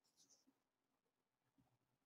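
Near silence: digital silence between speakers on a video call.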